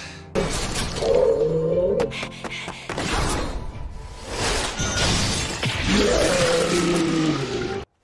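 Anime soundtrack music with a loud, noisy crashing wash of sound effects over it, starting suddenly about a third of a second in. The whole track is pitch-shifted, and it cuts out briefly just before the end.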